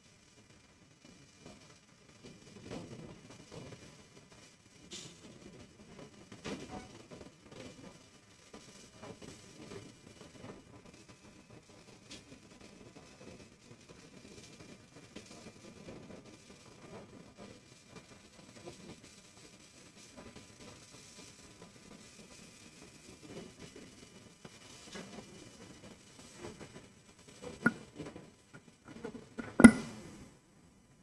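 Faint conference-hall room noise with indistinct movement and scattered soft knocks, then two sharp thumps near the end.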